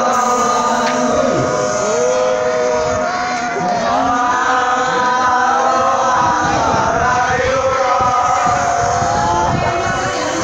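A group of young male scouts chanting a yel-yel cheer together, many voices sounding long held notes in unison.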